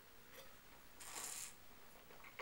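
A faint, breathy rush of air lasting about half a second, about a second in, as a taster takes a mouthful of white wine from a glass; otherwise near silence.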